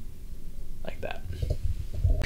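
A pause in a man's talk: a steady low hum with a few faint breathy mouth sounds about a second in.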